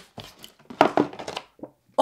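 Cardboard and paper packaging being handled and opened: a run of short knocks, taps and rustles that stops shortly before the end.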